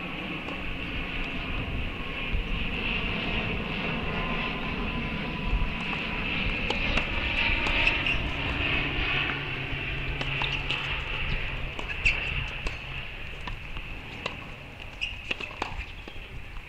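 Outdoor background noise: a steady low rumble, like distant engine noise, that swells towards the middle and then eases off. A few faint clicks come near the end.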